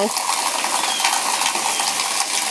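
Heavy rain pouring down, a steady hiss of drops splashing on waterlogged, muddy ground.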